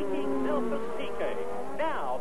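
1986 turbocharged Formula One engines running at speed, as heard over a race broadcast, the pitch of one dropping about half a second in as the cars slow and pass. A voice comes in briefly near the end.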